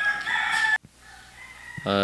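A rooster crowing: a short, high call that cuts off abruptly less than a second in.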